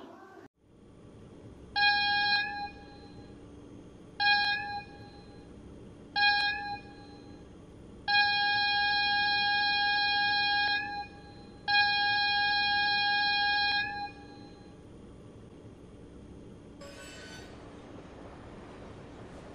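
Steam locomotive whistle blowing three short blasts and then two long ones, each a multi-note chord, over a steady low background noise. A short hiss comes near the end.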